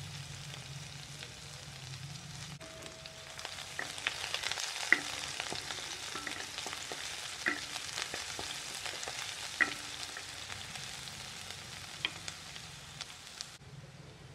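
Chopped onion sizzling in hot ghee in a kadhai, being softened until just translucent rather than browned. Through the middle a wooden spatula scrapes and taps against the pan as it is stirred, over a steady low hum.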